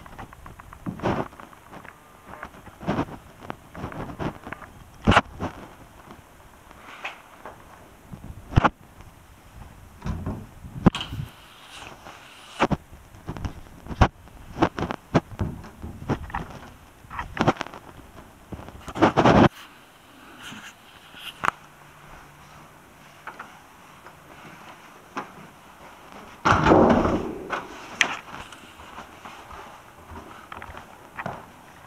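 Irregular knocks, thuds and rustling of things being handled at close range, like a door or panel being moved. A longer stretch of rustling comes near the end.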